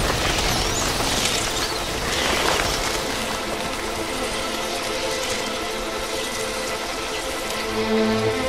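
Film soundtrack: a dense rushing wash of sound effects over a building orchestral score of held tones, which grow clearer near the end.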